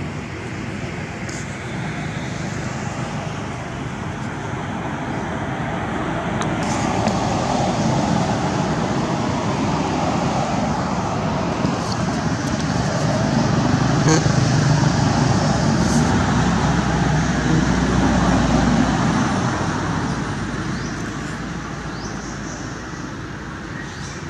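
Low, even road-traffic rumble, like a vehicle passing nearby, that builds to its loudest a little past the middle and then fades toward the end.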